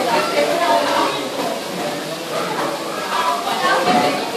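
People talking and chattering, with the echo of a large indoor hall.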